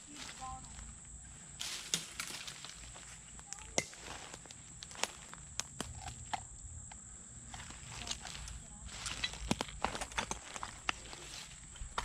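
Footsteps in flip-flops through dry leaf litter and twigs: irregular crunches, snaps and clicks, some sharper than others.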